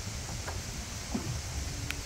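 Wind buffeting the microphone as a gusty, uneven rumble over the open river, with a faint hiss of wind and water and a brief click near the end.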